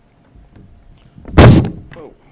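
A single loud thump about one and a half seconds in, short with a brief decay: a knock against the podium microphone.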